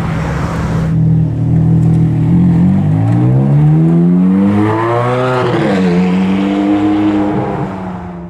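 Ferrari F430's V8 pulling away, its note climbing steadily to a peak about five seconds in, dropping sharply at a gear change, then holding level as the car drives off.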